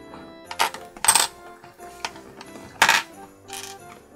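Small plastic LEGO bricks clicking and clattering as they are handled and pressed together, a few sharp clicks with the loudest about a second in and just before three seconds, over soft background music.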